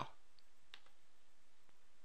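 Low steady hiss with a few faint, short clicks scattered through it.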